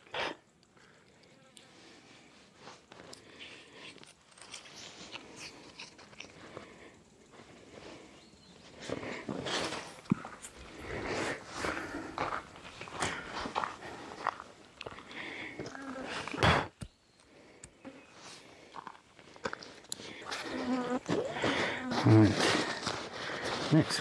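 Rustling and clicking of tree straps and whoopie slings being handled and fastened around a tree trunk, with one sharp knock about two-thirds of the way through. Low speech near the end.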